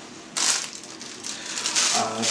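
Plastic packaging crinkling as it is picked up and handled: a sudden crackle about half a second in, then more crinkling building near the end.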